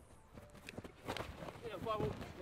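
Rugby players running in to a ruck during a breakdown drill: a scatter of quick footfalls and knocks of contact, with brief faint shouted calls about a second in and near the end.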